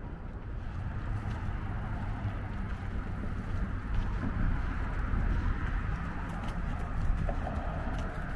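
Steady rumble of city traffic on a busy bridge roadway.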